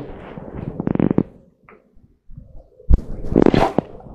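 Compost being handled for a seed tray, with rustling and crackling, a brief lull, and one sharp knock about three seconds in.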